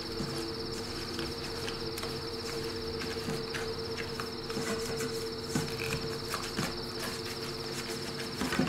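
A cricket trilling continuously in a high, rapidly pulsing tone over a low, steady hum of several pitches, with scattered soft clicks.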